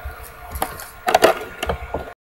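A few short knocks and clicks, with a cluster of them a little past the middle, over a low rumble.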